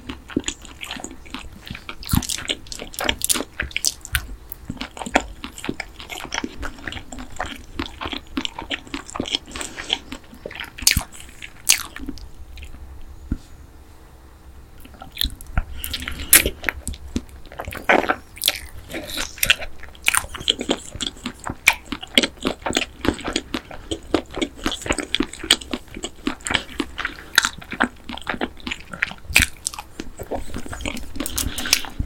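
Close-miked chewing of boneless sweet-spicy sauced fried chicken, with many sharp crunches. The chewing quiets about halfway through, then a new bite brings more crunching.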